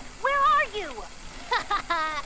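A cartoon boy's high voice in two short, sliding phrases with no clear words, one just after the start and one near the end.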